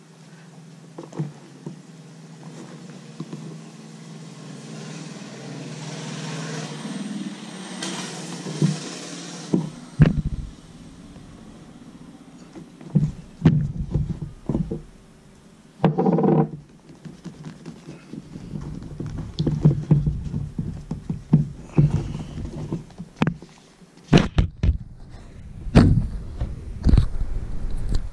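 A leather baseball glove being handled and rubbed over with conditioner on a wooden tabletop. A rising rubbing noise comes first, then from about ten seconds in there are scattered knocks and thumps as the glove is turned and set down.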